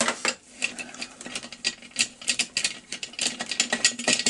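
Quick, irregular metallic clicking of a hand socket driver with an 8 mm socket as it turns out a chainsaw muffler bolt that had been stuck.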